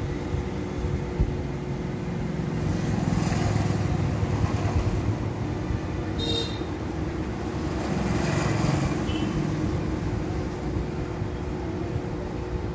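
Sewing machine stitching through blouse fabric: a steady mechanical run with rapid needle strokes, growing louder twice as it speeds up.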